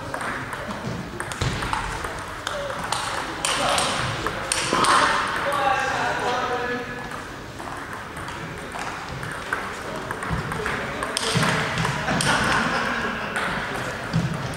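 Table tennis ball clicking sharply off the bats and table during rallies, a string of quick clicks with gaps between points.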